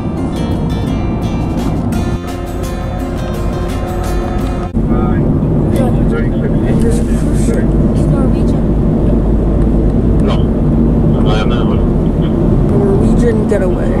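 Guitar background music that cuts off abruptly about a third of the way in, giving way to the steady low rumble of a moving car heard from inside the cabin, with faint voices.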